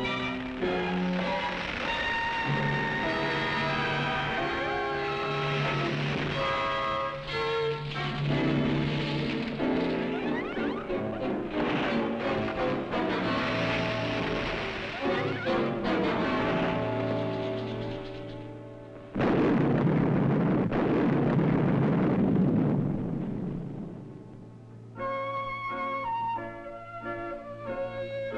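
Orchestral film score with strings and wind. About two-thirds of the way through, the music gives way to a sudden loud crash that lasts a few seconds and dies away, and the music comes back near the end.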